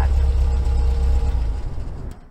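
A car driving away, its engine and road rumble a steady low drone that fades out near the end.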